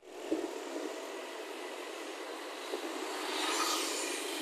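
Traffic noise from a near-empty street: a steady hiss of passing scooters and cars, growing louder about three and a half seconds in as a vehicle comes closer.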